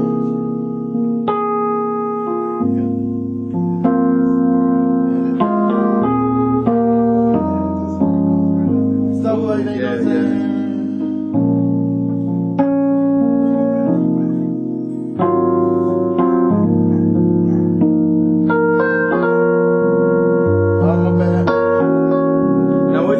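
Digital keyboard played in a piano voice, both hands: a slow gospel progression of full, rich chords over deep bass notes, each chord held a second or two before the next.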